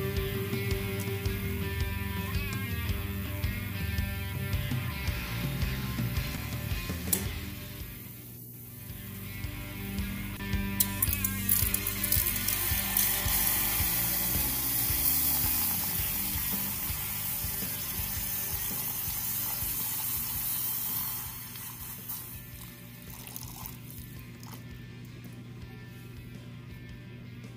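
Water pouring in a stream into a canister over cast aluminum ingots, starting about ten seconds in and stopping about five seconds before the end. Background music with a steady beat plays throughout.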